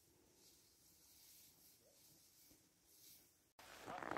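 Near silence: faint outdoor ambience. Just before the end, a faint noise starts.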